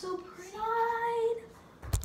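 A girl's voice singing one long held note that rises slightly and falls back, followed by a thump near the end.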